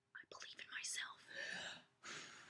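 A woman speaking quietly in short, breathy phrases.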